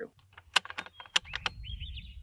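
Bolt-action precision rifle being handled during dry-fire practice: a quick run of sharp metallic clicks from the bolt and trigger, then a short sliding rasp near the end.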